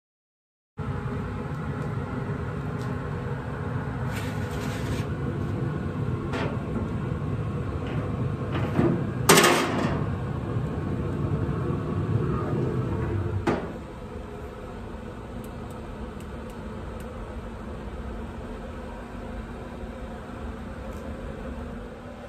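Pellet grill running in smoke mode during start-up, its fan giving a steady rushing noise, with a few metal knocks and clunks, the loudest about nine seconds in. After a knock a little past halfway the noise drops to a quieter level.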